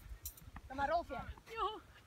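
Faint voices of people talking, with a single brief click right at the start.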